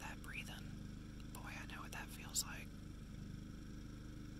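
A person whispering briefly, twice: once at the start and again for about a second midway, with a sharp tick in the second stretch, over a steady low electrical-sounding hum.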